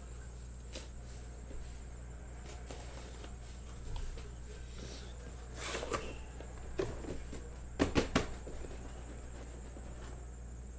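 Cardboard shipping case being handled and opened: a scraping rustle of the taped flaps being pulled back about halfway through, then three sharp knocks in quick succession near the end as the box is handled.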